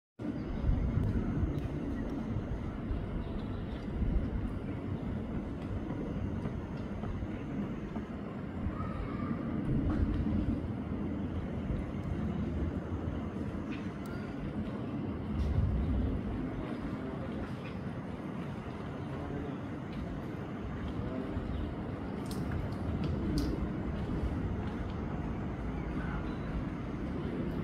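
Uneven low rumbling background noise with a few faint clicks.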